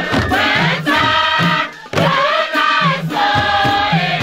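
A large mixed choir of men and women singing together to the beat of skin-headed hand drums struck with the palms, with a brief pause in the voices a little before halfway.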